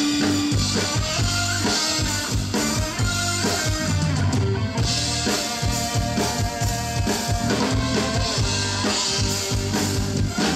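Live band playing an instrumental passage with a steady drum-kit beat under keyboards, without singing.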